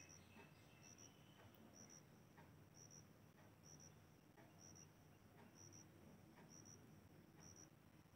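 Near silence with faint insect chirping: a quick high double chirp repeating about once a second.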